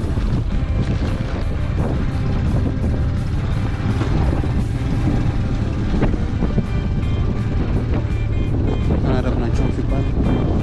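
Motorcycle riding noise: a steady, loud wind rumble on the microphone with the engine running, and background music over it.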